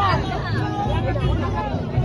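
Crowd babble at close range: many voices calling and shouting over one another, with a steady low hum underneath.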